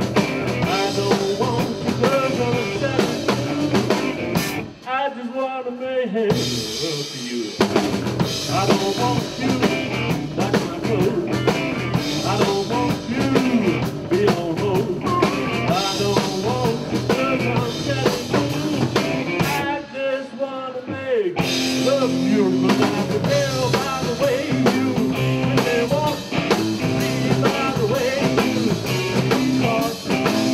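Live rock band playing, electric bass and drum kit driving it. The bass and drums drop out briefly twice, about five seconds in and again about twenty seconds in, before coming back in.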